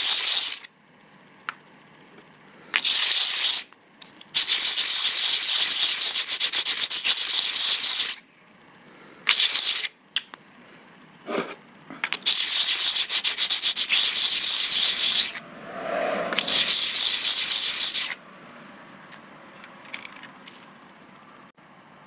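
Metal telescope-pier foot rubbed by hand on 50-grit sandpaper, a rough scratching in several stretches of a second to a few seconds each, with short pauses between. The foot is being roughed up so that glue will grip it.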